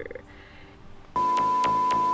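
Steady 1 kHz test-tone beep of a TV colour-bar card, starting about a second in. A steady electronic chord sits under it, with regular clicks about five a second.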